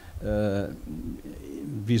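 A man's voice holding a drawn-out hesitation vowel for about half a second, followed by quieter low voice sounds.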